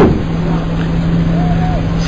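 A pause in a man's sermon, filled by a steady low hum and background noise on the recording, with a faint brief voice near the end.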